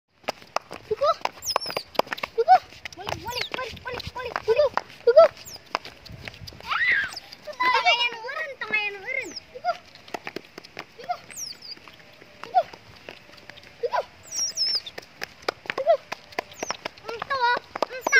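Baby otters calling: a steady run of short, high squeaks and chirps, with quicker trilling series about eight seconds in and again near the end.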